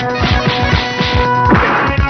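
Fight-scene film music with fast low drum-like thuds, several a second, and dubbed hit sound effects, with a crash-like burst about one and a half seconds in.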